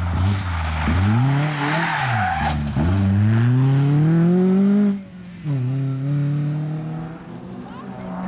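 BMW E36 3 Series Compact rally car engine at full throttle, revs climbing and falling twice with the gear changes. There is a hiss of gravel and tyres in the first couple of seconds, then the revs drop sharply about five seconds in and the engine runs on more quietly as the car moves away.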